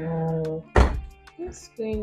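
Background music with a steady ticking beat, cut by one loud, sharp thud about a second in; a woman's voice begins near the end.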